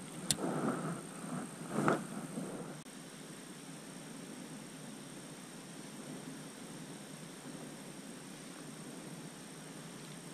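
Quiet outdoor background: a steady, even hiss, with a sharp click and a few light knocks in the first two seconds.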